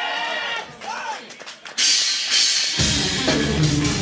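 A progressive metal band launching into a song live. After a short stretch of voice, a few clicks lead to cymbals coming in sharply about two seconds in. The full band, with drums, bass and guitars, comes in loud about a second later.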